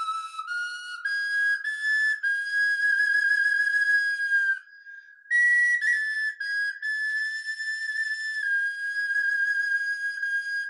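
A small bone flute playing a solo melody. The tone is high and breathy, moving in steps between held notes, with a short pause for breath just before halfway.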